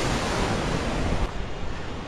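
Tsunami floodwater rushing and churning, with wind buffeting the microphone. The rush drops somewhat in level past halfway.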